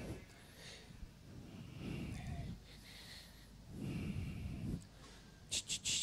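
Breathing into a public-address microphone during a mic check: soft breaths rise and fall about three times, then a few short, sharp hisses come near the end.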